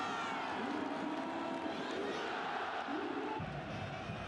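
Football stadium crowd noise: a steady din of many voices from the stands. It grows fuller and deeper about three and a half seconds in.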